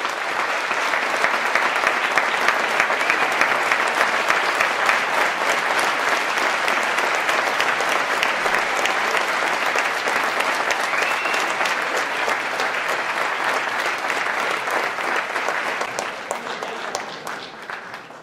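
Audience applauding: many hands clapping, starting suddenly, holding steady, then dying away over the last couple of seconds.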